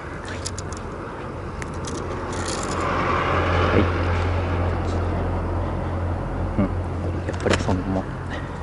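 An engine running nearby, swelling to its loudest about three to four seconds in and then easing off, with a few short knocks and clicks near the end.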